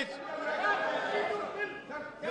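Several voices talking over one another in a large hall, a low background chatter without one clear speaker.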